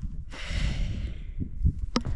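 A woman's long, heavy exhale, out of breath from the high altitude. A short sharp click comes just before the end.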